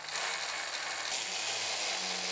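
Milwaukee cordless wrench with a 10 mm deep socket running steadily, spinning nuts down the long threads of U-bolts that clamp a bike rack to a trailer drawbar.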